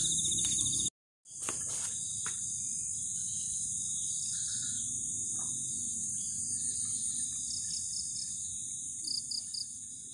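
Steady, high-pitched chorus of insects, such as crickets or cicadas, with a few short bursts of quick chirps near the end. The sound cuts out briefly about a second in, then resumes.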